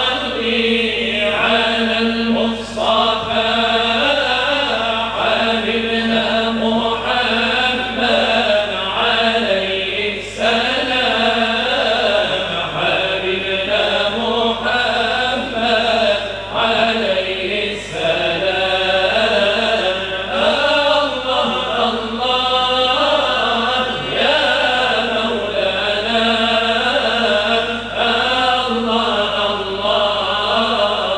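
Small all-male ensemble chanting a Moroccan religious praise song (samaa wa madih) in unison, without instruments. The melody is slow and ornamented, with brief pauses for breath between phrases.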